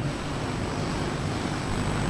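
Steady, even hiss of the recording's background noise in a short gap between a man's spoken phrases.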